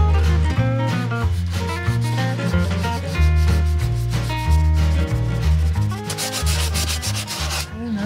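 Sandpaper rubbed back and forth by hand along a wooden trim strip, the strokes loudest near the end, over background music with a stepping bass line.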